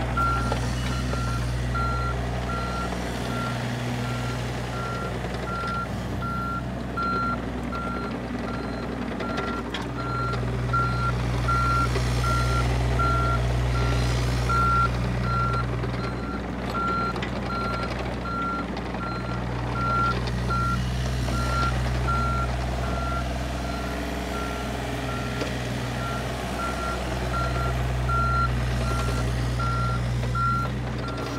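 Komatsu PC35MR mini excavator's diesel engine running as the machine tracks about, its travel alarm beeping steadily and evenly. The engine grows louder at times under load.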